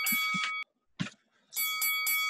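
A phone ringing: a trilling electronic ring in two bursts of about a second each, with a short click in the pause between them.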